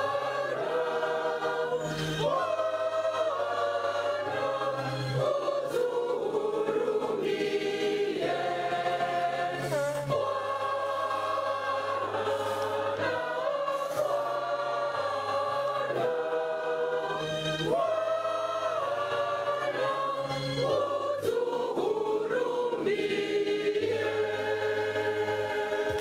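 A church choir singing a slow hymn in parts, with sustained low bass notes underneath that change every couple of seconds.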